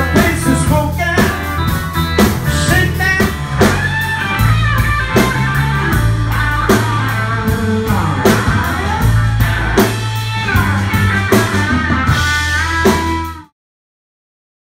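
Blues band playing: electric guitar over bass and drum kit, with singing. The music stops abruptly just before the end.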